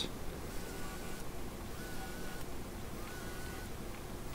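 Cordless drill with a tapered countersink bit running in several short bursts while boring pilot holes into the wood, heard faintly.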